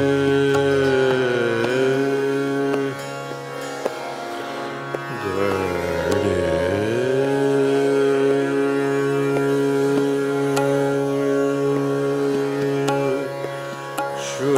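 Hindustani classical khayal in raga Shudh Kalyan at slow vilambit tempo: a male voice holds long sustained notes with slow gliding ornaments over a steady tanpura drone. The voice eases off briefly around three to five seconds in while the drone carries on.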